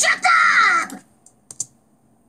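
A cartoon boy's loud, shrill, angry yell lasting about a second and falling in pitch, heard through a TV speaker. It is followed by two short clicks about a second and a half in.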